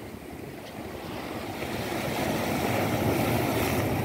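Ocean surf: a steady wash of breaking waves that grows louder over the first two or three seconds and then holds.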